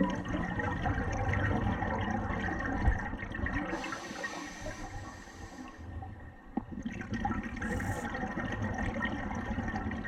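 Scuba diver's regulator breathing heard underwater: a stream of exhaled bubbles gurgling, a hissing inhale about four seconds in, then another long stream of bubbles.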